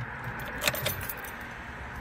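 Handling noise: a dark jacket rustles against the phone with a couple of sharp clicks about two-thirds of a second in, over a steady low rumble inside a car.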